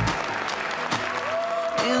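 Guests applauding, with background music carrying on underneath; the music rises again near the end.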